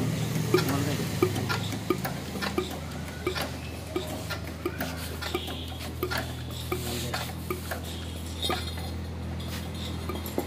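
Fuel injector nozzle of an Eicher 22 hp diesel engine being checked for chatter as fuel is pumped through it, giving a sharp click about every 0.7 s over a steady low hum.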